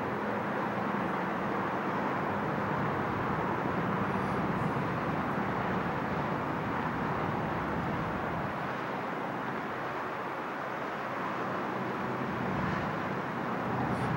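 Steady distant traffic noise outdoors: an even hum with no single vehicle or event standing out.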